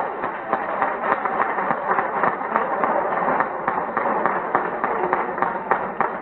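Audience applauding, a dense, steady clapping.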